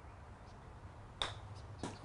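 A golf club chipping a ball off a hitting mat: one sharp click about a second in as the clubface strikes the ball, then a second, softer knock just before the end.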